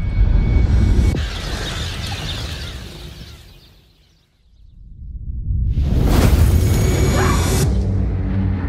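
Disaster-movie trailer sound design of a comet-fragment strike, with music underneath. A deep rumbling boom with a rushing noise starts at once and fades away by about four seconds in. A second rush and boom then swells up, is loudest a little past the middle, and its hiss cuts off near the end.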